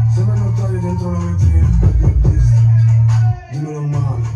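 Drill rap track playing: a rapper's vocals over a heavy, sustained 808 bass, which drops out briefly a little over three seconds in.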